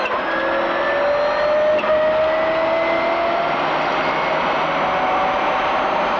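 Subaru Impreza WRC's turbocharged flat-four engine heard from inside the cabin, running hard under power with its pitch climbing slowly and steadily as the car accelerates.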